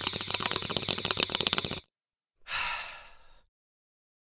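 A person taking a hit of marijuana smoke: a crackling, bubbling draw lasting about two seconds, then a breathy exhale that trails off.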